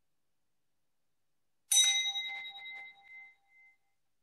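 A small bell struck once with a bright ding, about two seconds in, ringing with several clear high tones that die away unevenly over a second and a half.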